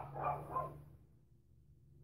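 A brief soft human voice sound in the first second, a murmur too unclear to be words, then near silence with a faint low hum.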